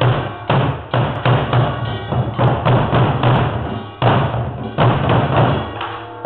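Samulnori traditional Korean percussion: several buk barrel drums beaten together with sticks in a driving rhythm, about two heavy strokes a second.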